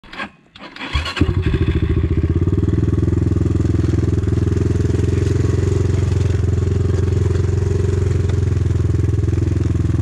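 250 cc enduro motorcycle engine running as the bike rides a snowy forest trail. It comes in about a second in and then holds a steady, even pitch.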